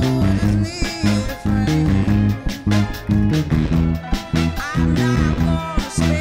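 Fingerstyle electric bass, a Fender Jazz Bass, playing a walking, stepping bass line along with a full band recording of drums and other instruments, with a steady beat.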